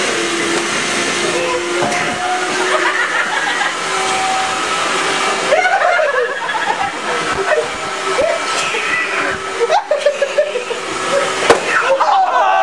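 Shop vac running steadily with an even motor whine, sucking the air out of a trash bag that a man is sitting in. Voices and laughter come in over it.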